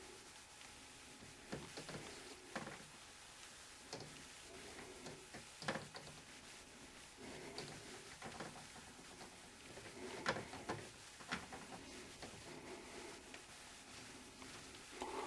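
Faint handling noise: a scattering of soft clicks and knocks as a handheld inspection camera and its probe cable are moved about, over quiet room tone.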